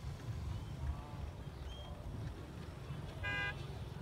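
A vehicle horn gives one short toot about three seconds in, over a steady low rumble.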